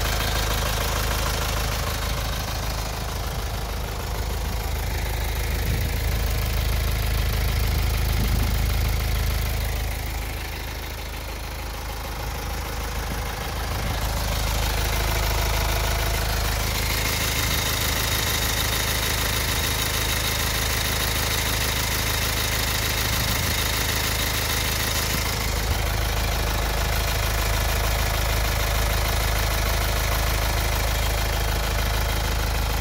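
Hyundai Santa Fe engine idling steadily, heard up close in the open engine bay. A faint high whine is mixed in for several seconds past the middle.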